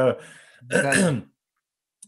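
A man clears his throat once, about a second in, just after the end of a spoken word.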